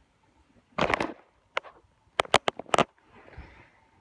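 Plastic containers being handled and set down on a wooden bench: a short scuffing thump about a second in, a click, then a quick run of about four sharp knocks, and a faint soft rustle near the end.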